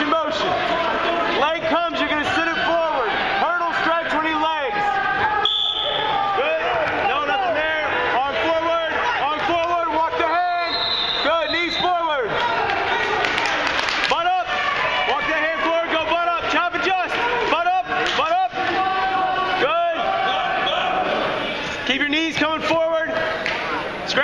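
Spectators and coaches shouting encouragement and instructions at the wrestlers, several voices overlapping over a crowd murmur.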